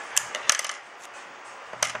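Scissors snipping: a few sharp metallic clicks, the loudest about half a second in, and another short cluster of clicks near the end.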